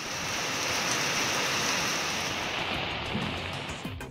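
Steady hiss of heavy rain falling, easing off in the last second or so as a short music sting starts.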